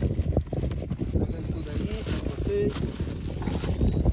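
Indistinct voices in short snatches over a steady low rumble of wind on the microphone, with a couple of knocks as grocery bags are handled in a car boot.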